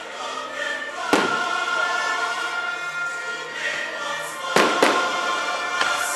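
Aerial fireworks shells bursting over choral music. There are four sharp bangs: one about a second in, then three in the last second and a half.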